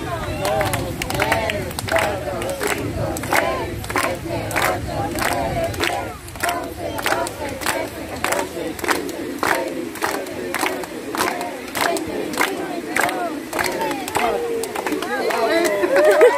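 A mixed group of adults and children singing a birthday song together, clapping in time at about two claps a second.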